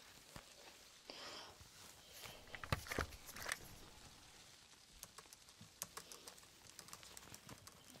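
Soft taps and clicks from a card payment being handled at the till, with a short rustle about a second in and a few louder taps about three seconds in.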